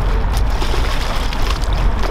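A hooked striped bass splashing at the water's surface beside a boat, over a steady low rumble.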